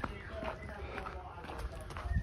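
Faint voices of people a little way off, with irregular light clicks a few times a second.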